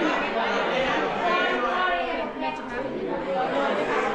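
Several people talking at once: overlapping conversation and chatter in a large room.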